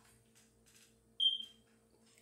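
A single short, high-pitched chirp a little over a second in, over a faint steady hum.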